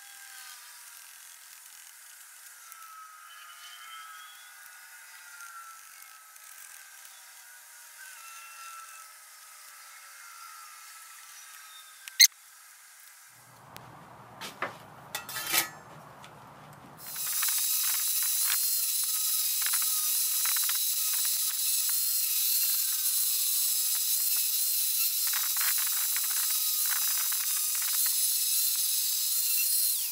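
Electric angle grinder starting up about halfway through and then running with a steady, loud, high whine while grinding a ring of a round steel plate down to bare metal, rougher at moments as the disc bears on the steel. Before it, only low background noise with a few clicks.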